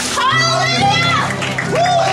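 Excited, high-pitched children's voices calling out and cheering over music with a steady low note, as a person is raised up out of the baptism water.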